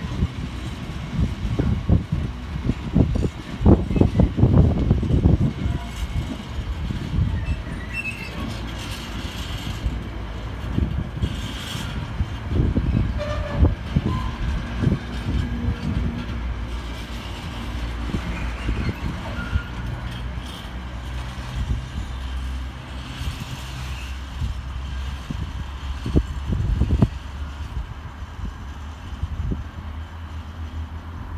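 Freight train's container flat wagons rolling past: a steady low rumble with clattering knocks from the wheels and bogies on the rails. The clatter is thickest in the first few seconds, comes again less densely in the middle, and a last knock sounds near the end.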